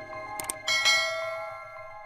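Intro jingle of ringing chime tones, with a quick mouse double-click about half a second in. A bright bell chime follows right after the click and fades away, the sound effect for a subscribe button being pressed and its notification bell.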